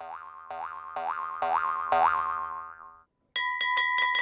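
Cartoon 'boing' sound effects: about seven springy boings, each a quick upward pitch glide, about two a second, fading away. After a short silence near the end, a bell starts ringing rapidly.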